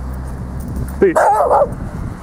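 A small dog barks once, about a second in, over a low steady rumble.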